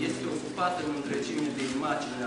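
A performer's voice speaking on stage, its pitch rising and falling.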